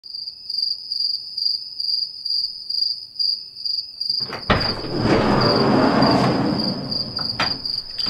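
A cricket chirping in a fast, even run of high chirps throughout. About halfway through a sharp click comes, followed by a few seconds of rushing noise and a second click near the end.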